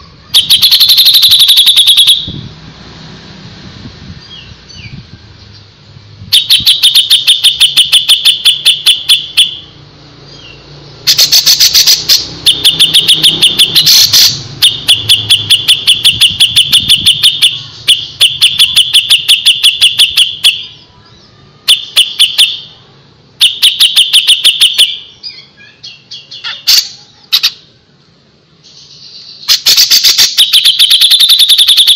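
Cucak jenggot (grey-cheeked bulbul) singing continuously in loud, rapid phrases of fast-repeated notes, each phrase lasting one to three seconds with short breaks between them.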